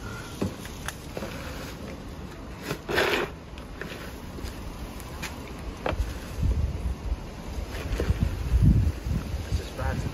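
Gravel roof chippings and broken insulation scooped with a plastic dustpan and tipped into a plastic bin: scraping and scattered clicks of stones, with a short rattling pour about three seconds in.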